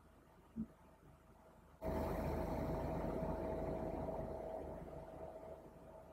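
Near silence for about two seconds with one soft tap, then a steady faint hiss carrying a thin high hum comes in abruptly and fades away toward the end: background room noise.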